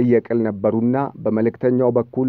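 Only speech: a man talking steadily, without pause.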